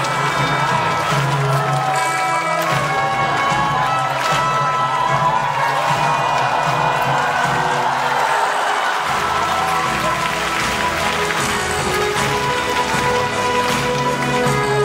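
Live orchestral music with piano playing steadily, and audience applause swelling up over it in the middle.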